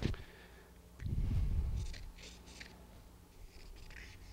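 Felt-tip marker drawing lines on the sole of a horse's hoof: three short scratchy strokes about two seconds in, with fainter strokes near the end. A low dull rumble of handling comes just before them.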